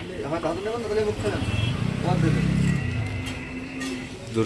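Men's voices talking, and a motor vehicle's engine rumble that swells briefly about two seconds in.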